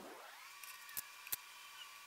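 Near silence: quiet room tone with two faint clicks about a second in, a third of a second apart.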